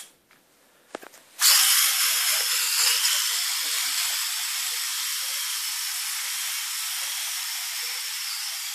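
A sharp click, then a few small clicks about a second in, and then a steady high hiss that starts abruptly about a second and a half in and runs on, fading only slightly.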